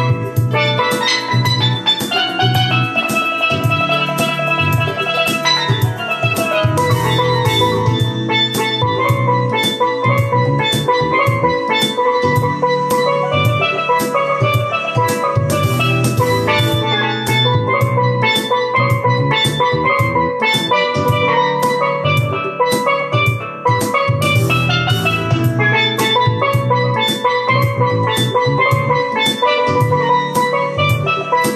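Steel pan played with rubber-tipped sticks, a quick melodic line of bright ringing notes, over a steady drum beat and a bass line.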